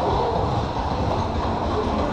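Dark-ride car running along its track: a steady low rolling noise with no break.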